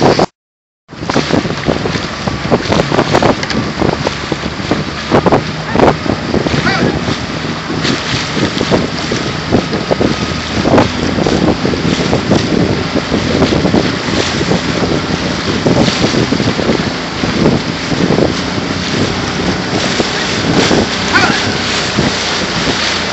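Wind buffeting the microphone over the water noise of outrigger canoe paddles, with irregular splashes and knocks from the strokes. The sound cuts out for under a second right at the start.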